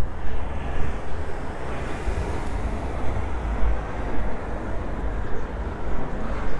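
Road traffic passing close by on a busy city road: cars and vans going past with a low rumble and tyre noise, swelling as one passes about two to three seconds in.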